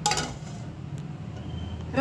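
Steel lid clinking against the rim of a steel cooking pot as it is set half over the pot: one sharp metallic clink at the start, then a small tick about a second in, over a low steady hum.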